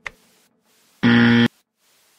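A single click of the quiz countdown timer, then about a second in a loud, steady half-second electronic buzzer: the time's-up signal as the countdown hits zero.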